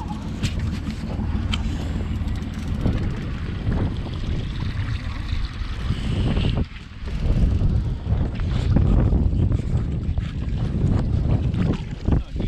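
Wind buffeting the microphone over choppy lake water slapping an aluminium boat hull, a steady heavy rumble with scattered knocks.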